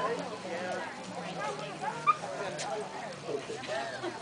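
Leashed police apprehension dogs whining and yipping excitedly, with one loud short cry about two seconds in, over crowd chatter.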